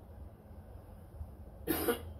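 A single short cough-like burst near the end, about a quarter second long, over faint background noise.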